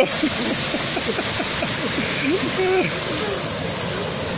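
Steady rush of a small waterfall cascading into a river pool.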